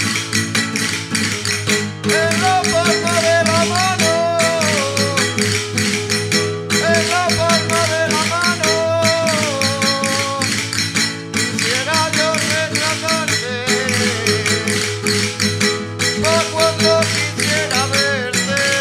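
Andalusian folk music for the chacarra dance: strummed acoustic guitar and a sung melody in short phrases, over a dense, steady clicking percussion beat.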